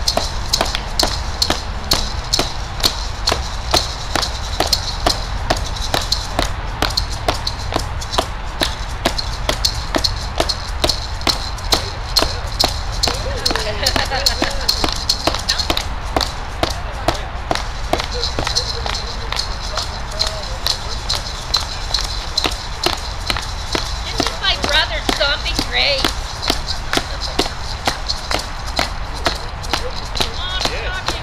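Hand drums, a frame drum among them, beaten in a steady, fast beat that goes on without a break. Voices are heard faintly underneath.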